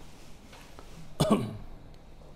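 A man coughs once, a short loud cough about a second and a quarter in.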